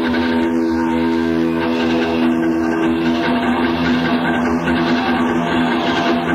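Live electric guitar solo of long sustained notes layered by echo delay into a held chord, one layer dropping away about three seconds in, heard on an audience cassette recording.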